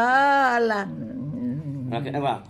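A person's long wordless vocal sound, its pitch rising and then falling over about a second, followed by quieter low voice sounds.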